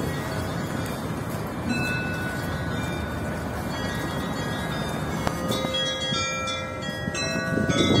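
Church bells ringing over a steady background noise: a strike about five seconds in, then several bells sounding together, growing louder near the end.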